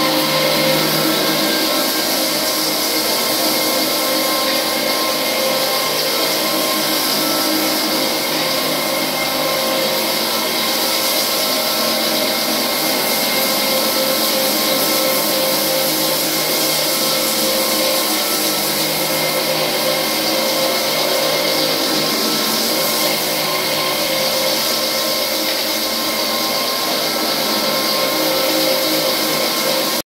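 Single-disc rotary floor machine sanding an old wooden parquet floor, its motor and abrasive pad running steadily against the wood with an even, unbroken noise.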